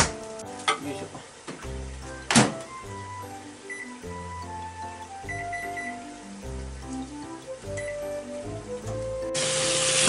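Background music with a steady bass line, over which a microwave oven's door shuts with a sharp clack about two seconds in and its controls give several short high beeps. Near the end, food frying in a pan starts to sizzle loudly.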